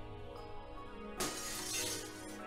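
Sustained background music, cut across about a second in by a sudden shatter of breaking car-window glass that rings on for most of a second.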